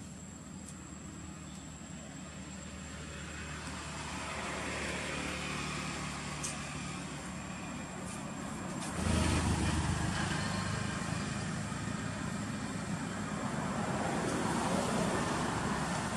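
Road traffic in the background: a steady motor hum that swells over the first few seconds and gets suddenly louder about nine seconds in.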